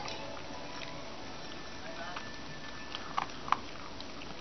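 Toy poodle eating from a bowl, chewing its food, with a few sharp clicks near the end as its teeth or the bowl knock.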